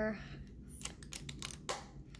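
Small plastic Lego bricks clicking and clattering as they are handled and pulled apart: a string of sharp, irregular clicks.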